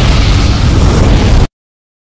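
A loud, continuous fiery explosion blast, the sound effect of a dragon's fire breath, with a heavy low rumble. It cuts off suddenly about one and a half seconds in.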